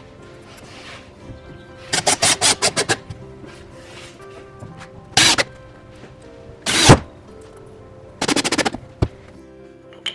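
Power drill driving wood screws in four short bursts, two of them coming as rapid pulses, fixing steel washers into holes in a wooden stool top. The burst about seven seconds in is the loudest. Background music plays throughout.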